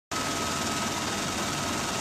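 Steady drone of an aircraft heard from inside its cabin, with a thin steady whine over it.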